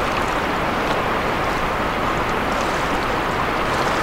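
Steady rush of river current flowing around a wading angler's legs.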